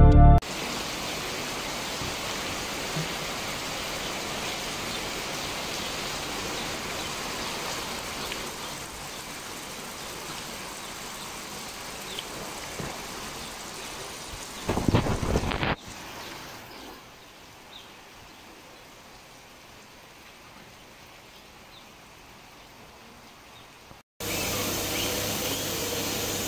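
Steady rain falling, an even hiss. About fifteen seconds in there is a brief louder rush. Near the end, after a momentary cut, the rain comes back louder.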